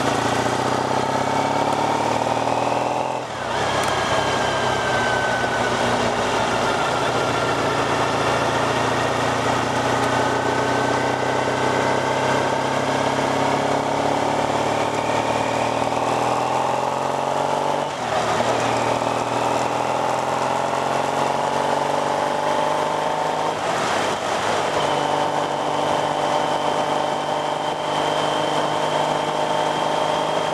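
Motorcycle engine running under way, heard from on the bike over steady wind and road noise. The engine note drifts in pitch with speed, with short breaks about three seconds in and again around eighteen seconds.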